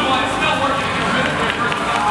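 An announcer's voice amplified over a public-address system in a large hall, over steady crowd noise.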